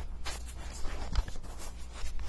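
Handling noise close to a phone microphone: a cardboard-and-paper media package being rubbed and shifted by hand, a run of scratchy rustles with a few small clicks, the sharpest about a second in, over a steady low hum.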